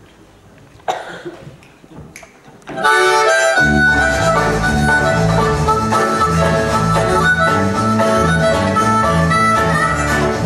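A bluegrass/Cajun band starts a tune just before three seconds in, after two short sounds: a loud harmonica lead over a picked banjo, with a steady low beat underneath.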